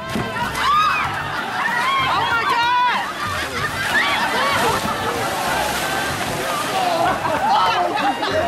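Several people jumping into a very cold outdoor swimming pool: water splashing and sloshing as they land and thrash about, with loud shouts and high yells from the plungers and onlookers, densest in the first three seconds.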